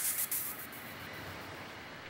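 Cartoon transformation sound effect: a noisy, shimmering whoosh that fades away during the first second, leaving a low hiss, as the robot boy's diving suit switches on.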